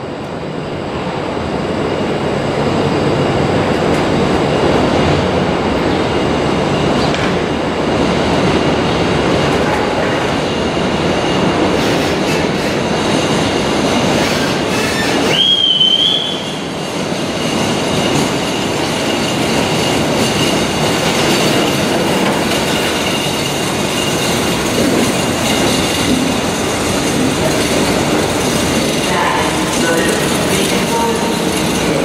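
Passenger train coaches rolling out along the platform, a steady rumble of wheels on rails that builds over the first few seconds. A brief rising wheel squeal comes about halfway through.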